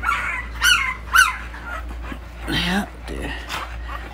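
Two-week-old micro exotic bully puppies crying: short high-pitched whimpers and squeals that slide up and down, several in the first second and a half.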